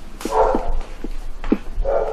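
A dog barking in the background, with one bark about half a second in and another near the end.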